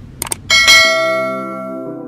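Subscribe-button animation sound effect: two quick clicks, then a bright bell ding that rings out and slowly fades. Soft background music comes in under the ring just under a second in.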